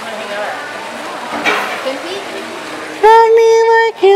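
Fountain jets splashing steadily into a pool, with faint voices in the background. About three seconds in, a person right at the microphone lets out a loud, steady-pitched held vocal sound for about a second.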